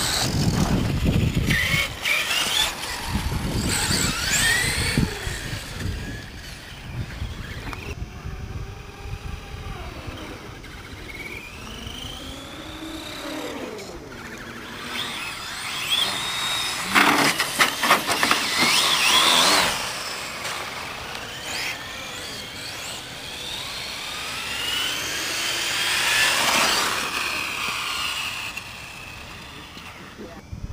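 Radio-controlled cars being driven hard, their motors whining and rising and falling in pitch as they speed up, slow and pass by, with the loudest passes a little past halfway and again near the end.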